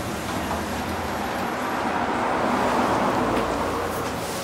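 Rushing noise of a passing vehicle, swelling to a peak about three seconds in and then easing off.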